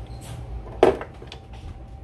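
A metal conventional fishing reel set down on a workbench: one sharp knock a little under a second in, followed by a few faint handling clicks.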